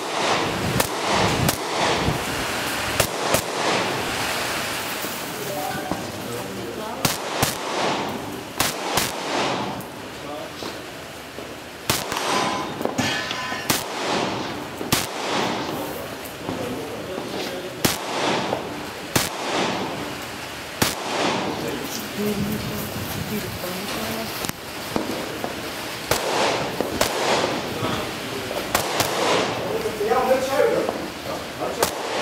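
Semi-automatic rifle fire in quick, irregular strings of shots, each shot trailed by a short echo.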